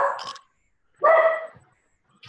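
A dog barking, heard through a video-call connection: one bark right at the start and another about a second in, with dead silence between them.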